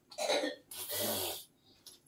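A person coughing twice, a short cough and then a longer, breathy one.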